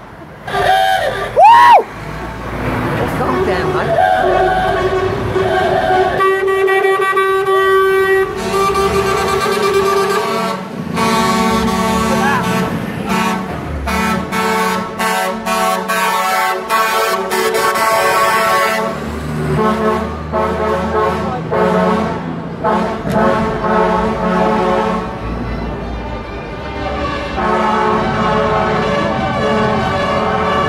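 Lorry air horns sounding again and again from passing trucks: long held chords of several tones that shift in pitch through the first half, then shorter repeated toots in the second half, over the low run of diesel engines.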